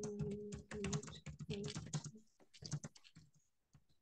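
Typing on a computer keyboard: a quick run of key clicks for about two seconds, a short pause, then a few more keystrokes.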